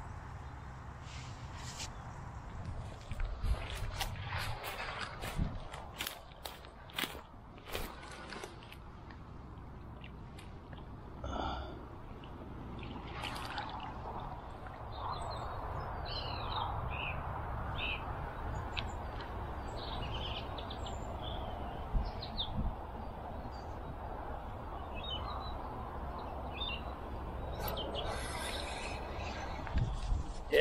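Small birds chirping and calling, over a steady hiss that fills the second half. Sharp clicks and rustles from close handling come in the first several seconds.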